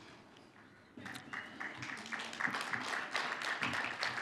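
Audience applauding, starting about a second in after a brief hush.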